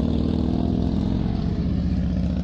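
Motorcycle engine running at a steady pitch and level as the bike rides off.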